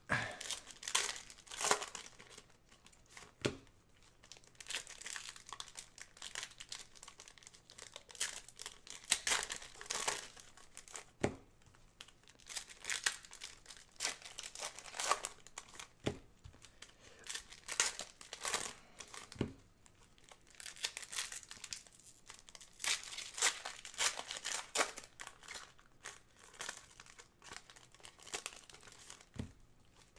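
Foil trading-card pack wrappers crinkling and tearing open by hand, with cards slid out and handled. Irregular crackles throughout, with a few sharper taps.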